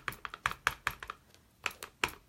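Stampin' Up! ink pad tapped lightly and repeatedly onto a plastic embossing folder to ink its raised side: a quick run of light taps, about six a second, with a short pause about a second and a half in.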